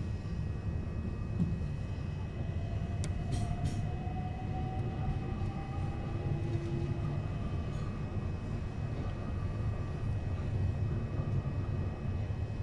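Class 376 Electrostar electric multiple unit heard from inside the carriage while running: a steady low rumble with a faint steady whine. A faint tone rises slightly a few seconds in, and a few short clicks come about three seconds in.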